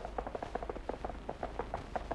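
Quiet, rapid, irregular crackle of short clicks, several a second, over a low steady hum: surface noise on the optical soundtrack of an old 1948 film print.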